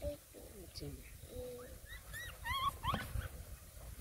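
Newborn puppy whimpering while held to its mother's teat to nurse: a quick run of short, high-pitched, rising whines about two to three seconds in.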